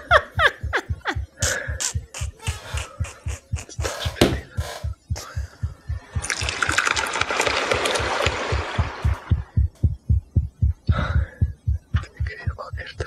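A fast, loud heartbeat thudding about three times a second throughout, exaggerated to stand for a hangover's sensitivity to sound. Kitchen clatter comes over it in the first half, and from about six seconds to nine and a half a loud pour of coffee from a carafe.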